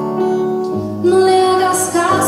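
Live band playing a ballad, with acoustic guitar and keyboard under sustained notes; a woman's singing voice comes in more strongly about a second in.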